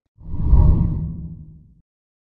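A single deep whoosh sound effect for a graphic transition. It swells up quickly and fades away over about a second and a half.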